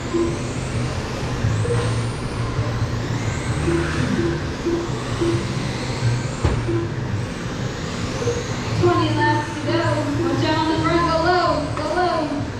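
Radio-controlled sprint cars lapping a dirt oval, their motors making faint rising and falling whines as they pass. Music and a voice run underneath, with the voice louder in the last few seconds.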